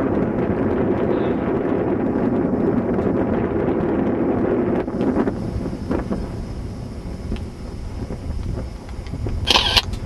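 A motor vehicle's engine running steadily under wind noise. About halfway through it gives way to a quieter low rumble, and a short sharp sound comes near the end.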